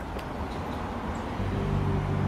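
Steady outdoor background noise, then low held notes of background music come in about one and a half seconds in.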